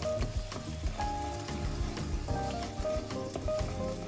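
Thai curry paste and coconut milk sizzling in a nonstick wok as a plastic spoon stirs it, with scattered light clicks from the stirring. Background music with held notes plays over it.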